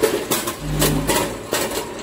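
Multihead weigher running: hopper gates clack open and shut in a quick, irregular run of knocks. A low hum comes on for about half a second midway and cuts off again.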